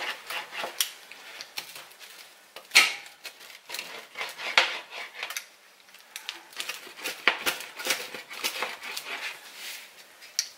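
Pizza cutter wheel rolling and scraping over a metal pizza pan in repeated strokes, crunching through crisp crust, with sharp metal-on-metal clicks and knocks; the sharpest knock comes a little before three seconds in. The cutter is dull, so it is pressed and rolled over the same cuts again and again.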